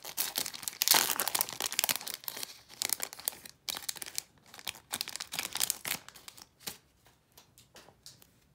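Foil wrapper of a Panini Donruss basketball card pack being torn open and crinkled: a dense crackle, loudest about a second in, that thins to a few scattered crinkles after about six and a half seconds.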